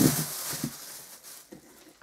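Thin plastic food bag rustling and crinkling as it is handled with cucumbers inside, fading away after about a second and a half.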